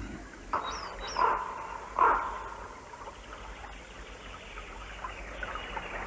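Birds calling in woodland: three short harsh calls in the first two seconds with two brief high, falling chirps among them, over a steady hiss of running stream water.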